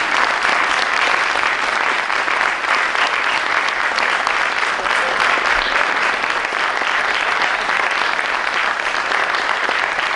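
Audience applauding steadily, the even clatter of many people clapping.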